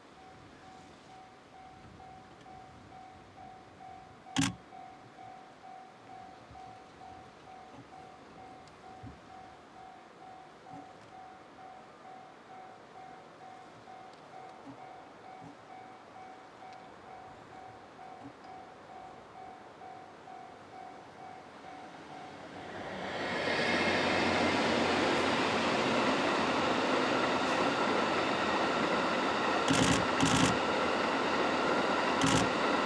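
EF81 electric locomotive hauling E26 sleeper coaches approaching and running past, its noise rising sharply about three-quarters of the way in and staying loud. Before it, only a faint, evenly pulsing steady tone and one sharp click.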